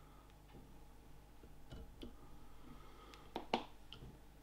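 Quiet handling noise of fingers working a foam fly held in a fly-tying vise: a few faint clicks and taps, with two sharper clicks close together near the end.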